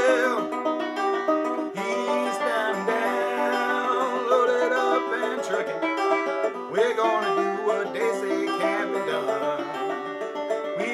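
A banjo played continuously, picking chords in the key of G as accompaniment for a country song.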